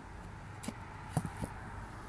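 Steady low outdoor background rumble with three short, soft knocks around the middle from a handheld camera being handled and moved.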